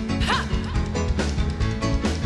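Live pop-rock band playing, with a steady drum beat, bass and violin, and a short swooping high note about a third of a second in.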